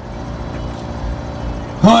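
Steady background noise, heaviest in the low end, with no voice for nearly two seconds. Then a man's voice through a microphone and loudspeakers comes in with a word near the end.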